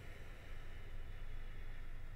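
A faint, slow breath in, lasting about two seconds and fading near the end, over a steady low background hum.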